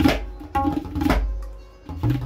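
A tabla pair played by hand: sharp, ringing strokes on the dayan, with a deep bass stroke on the bayan about a second in that dies away.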